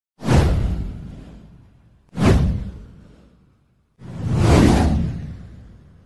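Three whoosh sound effects for a title animation. The first two hit sharply and fade away over about two seconds each. The third swells up about four seconds in, then fades.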